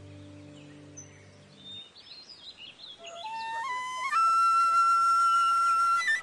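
Background music: a soft sustained chord fades out in the first two seconds, then a flute enters about three seconds in, climbing in a few steps to a long held high note.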